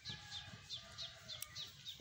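A bird chirping over and over, short high chirps at about four a second.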